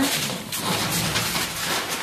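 Brown kraft paper rustling and crinkling in a dense, steady crackle as puppies chew and pull at the torn sheets.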